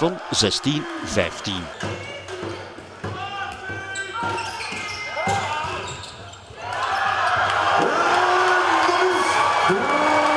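Game sound of indoor handball: the ball bouncing on the wooden sports-hall floor among players' shouts. About seven seconds in, many voices rise into loud, sustained shouting and cheering.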